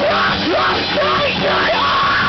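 Loud live rock band playing, with a singer yelling into the microphone over electric guitars and drums.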